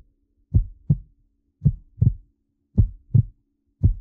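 Heartbeat sound effect for suspense: low double thumps in a steady lub-dub rhythm, four beats about a second apart, over a faint steady low tone.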